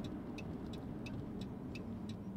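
Steady road and engine rumble inside a moving car's cabin, with the turn-signal indicator ticking evenly, about three ticks a second.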